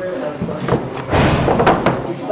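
Books being set down and pushed onto a wooden bookshelf: a knock a little before the middle, then a louder run of thumps and knocks in the second half.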